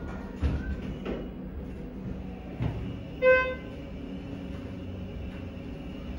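Schindler elevator car travelling with a low steady hum and a few soft thumps, then a single short electronic beep a little over three seconds in, the loudest sound here.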